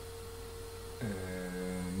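A steady hum, then about a second in a man's voice holding a long, drawn-out hesitation sound, a thinking "ehh" that dips in pitch at its start and then stays level.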